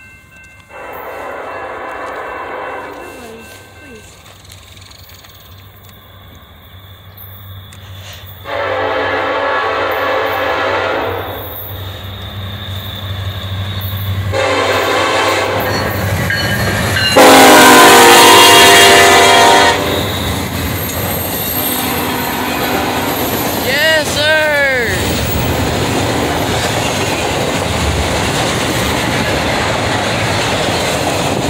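Norfolk Southern diesel locomotive sounding its horn in four blasts, long, long, short, long, the last the loudest as it passes close by. This is the grade-crossing signal. The rumble and clatter of the passing intermodal train then runs steadily, with a brief wavering squeal about twenty-four seconds in.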